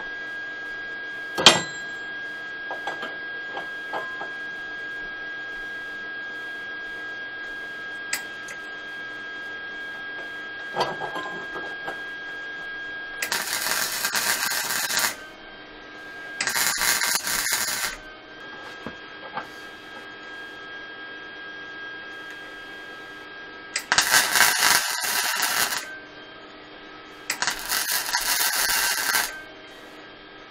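A welding arc tack-welding steel frame tubing: four separate welds of about two seconds each, two in the middle and two near the end, over a steady hum. There is a single sharp click shortly after the start.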